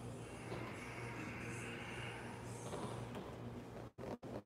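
Faint room tone with a steady low hum; it cuts out abruptly right at the end.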